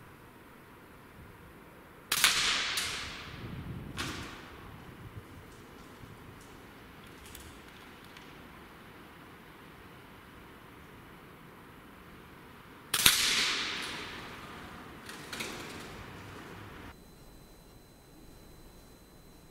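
Two shots from an Air Arms S510 .177 PCP air rifle, about eleven seconds apart, each a sharp crack that rings on for over a second in the large metal-clad building. A fainter knock follows about two seconds after each shot.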